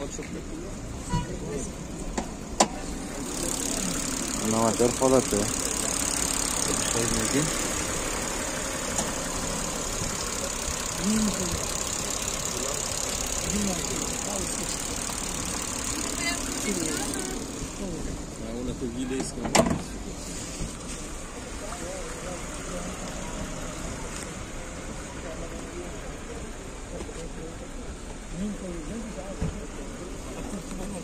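A car bonnet shut with a single sharp bang, after a steady high hiss of about fourteen seconds. Voices murmur in the background.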